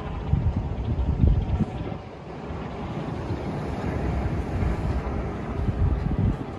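Wind buffeting the microphone in irregular gusts, loudest in the first two seconds and again near the end, over a steady hiss of breaking surf.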